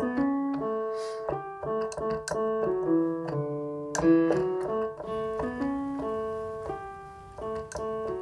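Piano sound played on a MIDI keyboard: a slow, simple melody of single notes, about two a second, each left ringing under the next. It is a short melody made from a few notes of a major scale.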